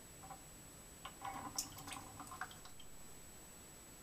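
Faint clicks and small watery plops from a 3D-printed Mascall mill mouse trap over a water bucket as a mouse works its bait paddles. They come in a short cluster in the middle, with one sharper click among them.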